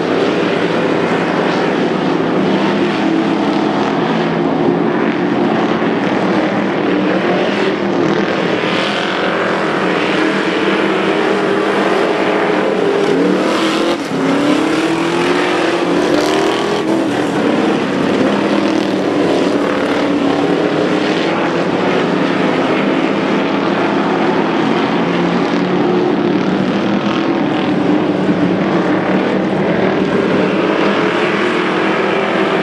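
V8 dirt-track stock car engines running at race pace, their pitch rising and falling as the cars lap the oval.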